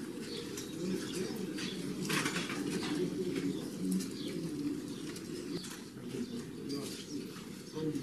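Ambient sound with birds calling and a faint murmur of distant voices.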